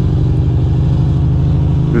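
2006 Ducati Monster 620's air-cooled L-twin engine running steadily at low speed as the motorcycle rolls slowly along, heard from the rider's seat.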